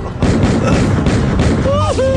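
A loud crash sound effect from a cartoon car chase: a dense, noisy rush that starts suddenly and lasts about a second and a half. A short pitched cry rises and falls near the end.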